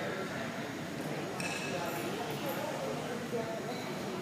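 Indistinct background chatter of many people in a large hall, steady throughout.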